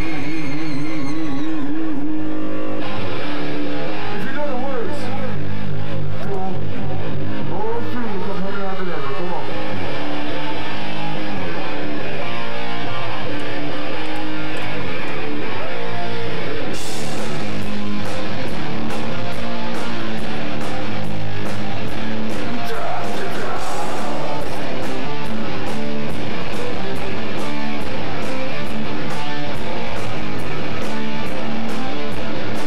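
A live band's electric guitars play loud and distorted, with a wavering held note in the first couple of seconds. Drums and cymbals join in about seventeen seconds in, keeping a steady beat under the guitars.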